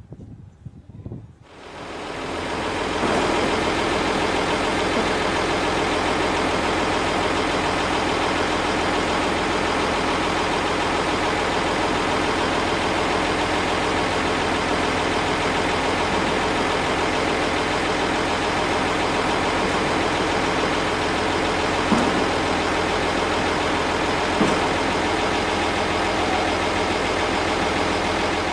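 Mercedes-Benz Unimog U1600's OM366 diesel engine running while it drives the hydraulics that raise the tipping rear body. The engine comes up loud about two seconds in and then holds a steady note.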